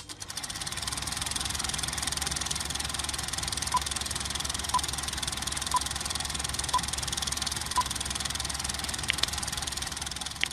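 A film projector running with a fast, steady clatter, joined in the middle by five short beeps about a second apart, the countdown beeps of a film leader. Near the end come a few short, high clicks.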